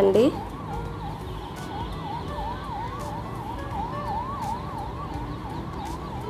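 A siren in a rapid yelp, its tone sweeping up and down about three times a second and running on without a break.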